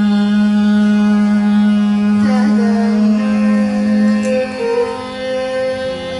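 Carnatic and Hindustani classical music from a vocal jugalbandi with violin accompaniment: one long note held steady for about four seconds, after which the melody moves on to other notes.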